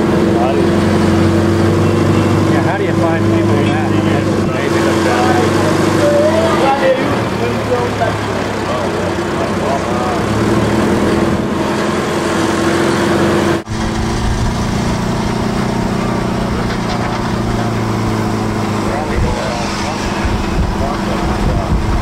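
Vehicle engine running at a steady low drone with road noise, and voices murmuring in the background. There is a brief dropout about two-thirds of the way through, after which the drone carries on.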